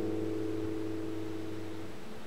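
Classical guitar chord left ringing and slowly dying away, its higher notes fading first.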